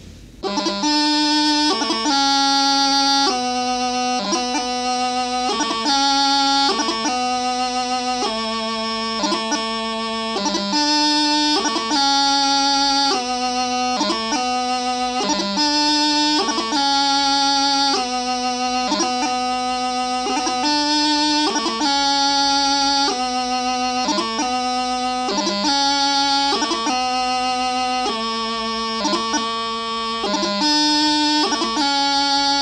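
Highland bagpipe practice chanter playing the taorluath doubling variation of a piobaireachd: a steady run of held notes, changing about once a second, each broken by quick grace-note embellishments.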